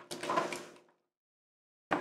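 Plastic parts of an Optimus Prime action figure sliding and clicking as it is handled, briefly, then dead silence for about the last second.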